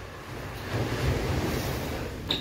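Wind buffeting the microphone over the rush of ocean surf: a rumbling, rushing noise that swells about halfway through.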